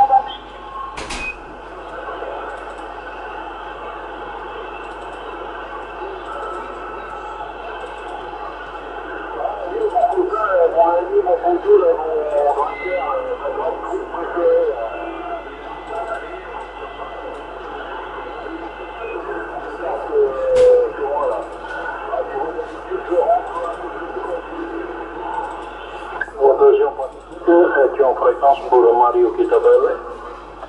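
Radio static from a Yaesu FT-450 transceiver receiving the 27 MHz CB band, with faint, distorted voices of distant stations coming and going through the hiss; during good propagation these are long-distance contacts. Two sharp clicks are heard, about a second in and about twenty seconds in.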